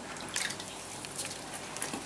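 A calf drinking milk from a plastic bucket: a few soft, wet slurps and splashes.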